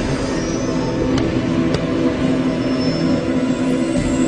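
Dark, droning background music: steady low sustained tones held without a break.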